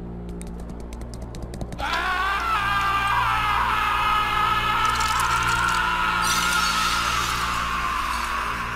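A cartoon character's long, drawn-out scream, starting about two seconds in and held to the end, over a low steady drone. A run of faint clicks comes before it.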